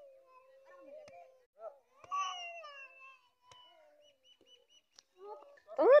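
High-pitched children's voices calling out in long, drawn-out cries while playing ball, with a few faint knocks in between and a louder rising shout at the very end.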